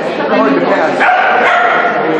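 A Shetland sheepdog barking, over people talking.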